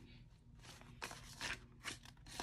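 Paper dollar bills rustling and flicking as they are counted by hand: a few short, crisp rustles from about a second in to near the end.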